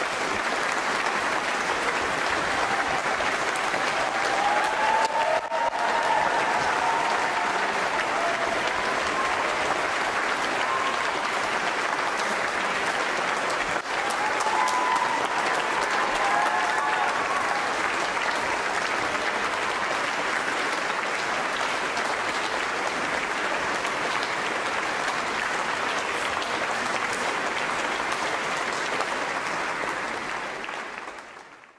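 A large audience applauding steadily at the close of a violin and orchestra performance.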